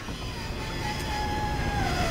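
Steady low background rumble with a faint thin whine that slowly drops in pitch and fades out near the end, and a single tiny click about halfway through.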